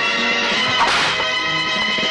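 Film background score with long held notes, and a single short noisy hit effect from the fight about a second in.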